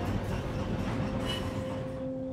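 Streetcar rolling past, with a steady rumble of its wheels running on the rails.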